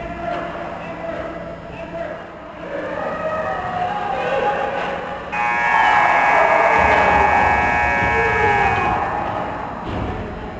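Ice rink's game horn sounding one long steady blast, starting suddenly about five seconds in and lasting about three and a half seconds: the end of the game. Voices carry on in the rink before it.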